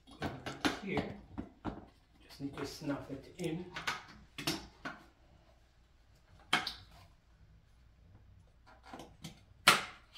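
Knocks and clicks of a pressure washer's plastic-and-metal handle frame being handled and fitted together, with a sharp knock near the end as the loudest sound. A voice speaks briefly in the first few seconds.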